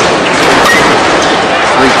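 Steady crowd noise from a college baseball crowd in a ballpark, with a metal bat striking the pitched ball about half a second in.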